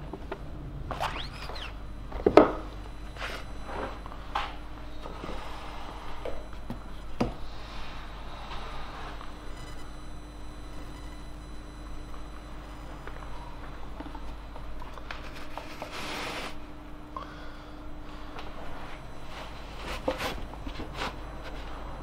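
Squeegee scraping water-based ink across a screen-print mesh, with a knock about two seconds in, then soft rubbing and handling of a printed cotton T-shirt over a faint steady hum.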